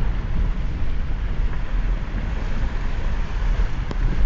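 Steady low rumble of a car driving on a wet road, with wind buffeting the microphone at the open side window. A single sharp click just before the end.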